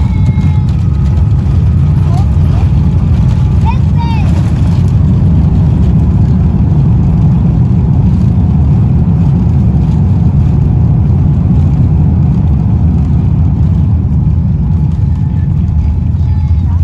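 Loud, steady low rumble inside the cabin of a Boeing 787-10 decelerating on its landing rollout, with spoilers raised after touchdown.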